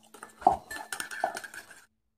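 Metal spoon clinking and scraping against a small ceramic bowl while stirring a dipping sauce, with the sharpest clinks about half a second and just over a second in. It cuts off suddenly near the end.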